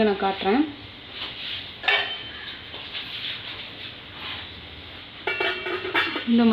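Stainless steel kitchenware clinking: a single sharp metal clink about two seconds in, then a ringing clatter of steel near the end as a steel lid is set over a steel bowl in an idli pot.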